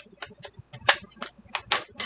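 Small scissors snipping at the packaging on a toy shopping cart: a series of sharp clicks, about six or seven in two seconds.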